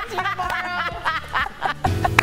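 Several people laughing and giggling over a steady background music bed. Near the end the sound cuts abruptly to a different piece of music.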